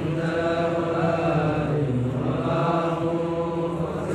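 A male voice chanting Arabic verse in long, drawn-out held notes, in two phrases with a short break about halfway through.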